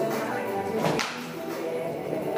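Background music with a steady pitched accompaniment, and one short, sharp swish about halfway through.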